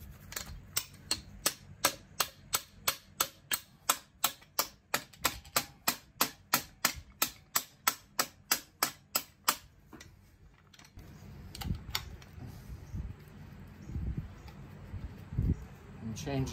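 Hammer tapping a socket seated against a piston's wrist pin to drive the pin out of a VW air-cooled 1600cc engine piston: evenly spaced metal strikes, about three a second for some nine seconds, then they stop. A few quieter knocks and scraping follow as the stuck pin is worked loose.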